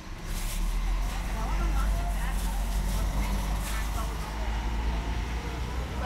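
Low steady rumble of road traffic with faint background chatter from people nearby.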